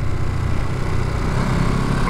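Ducati Monster SP's 937 cc Testastretta V-twin, fitted with a Termignoni exhaust, running steadily on light throttle at around 30 mph, with wind rush over it.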